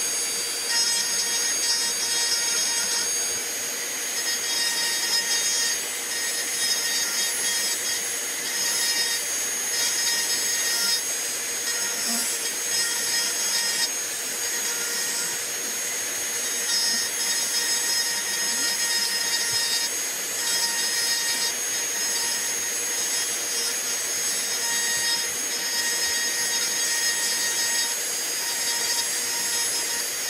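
A high-speed rotary carving tool with a burr, running with a steady whine while it grinds into the wood of a rifle stock; the grinding noise rises and dips every few seconds as the burr is pressed in and eased off.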